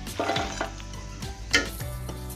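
Hot fried potato chips tipped from a slotted steel spoon onto a paper towel in a steel plate, a short rustle as they land, with frying sizzle. There is a sharp knock about one and a half seconds in, the loudest moment.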